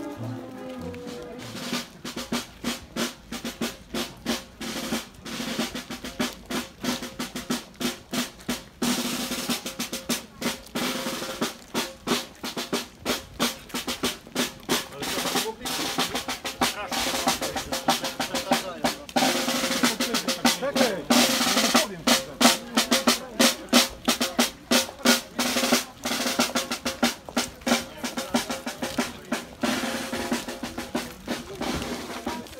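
Marching brass band playing as it walks: drum strokes in a steady march rhythm, starting about two seconds in, under held brass notes from tubas and saxophones.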